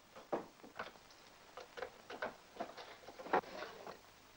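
Small clicks and knocks of a key turning in a wooden desk drawer's lock and the drawer being pulled open, with a sharper knock near the end.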